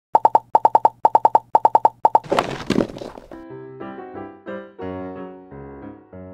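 Quick run of short, pitched plopping sound effects in groups of four for about two seconds, then a swooshing swish, after which light electric-piano music begins.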